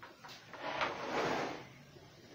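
Clear plastic tray and cardboard box sliding and scraping against each other as a 10-inch Funko Pop figure is pulled out of its box, with a sharp click partway through.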